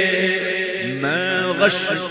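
A man's voice chanting a naat, an Urdu devotional poem, holding a long note. A new phrase then begins a little under a second in and rises in pitch.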